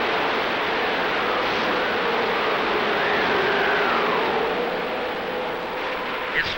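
Hurricane wind and water as a steady rushing noise, with a faint whistle that rises and falls about halfway through.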